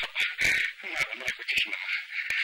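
A dry rattling: a quick, uneven run of sharp clicks over a steady hiss.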